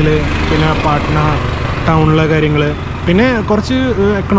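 A man talking, in phrases with short pauses, over a steady low hum.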